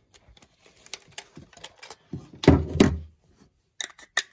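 Handling sounds of a metal lens adapter being taken off a Canon EOS camera's lens mount and turned in the hands: a run of small clicks, with two louder knocks a little past halfway and a few more clicks near the end.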